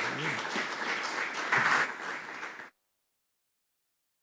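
An audience applauding at the end of a lecture, the sound cutting off abruptly to silence a little under three seconds in.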